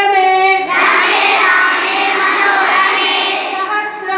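A large group of schoolchildren chanting slokas in unison in a hall. The voices hold a long note at the start and again near the end, with a rougher, less steady stretch of chant between.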